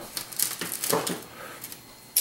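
A few light clicks and taps of a wire whisk and copper mixing bowl being handled on a wooden table.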